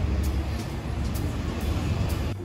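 City street traffic with a steady low rumble, led by the engine of a double-decker bus close by.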